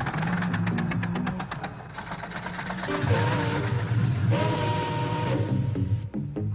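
Cartoon soundtrack of music with machine sound effects: quick even clicking, about ten a second, for the first two seconds, then a busier mechanical clatter with held tones as the drawn gears and belts multiply.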